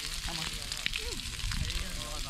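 Coral trout fillets and fish skins sizzling in a frying pan over a campfire, a steady hiss with a few crackles from the fire.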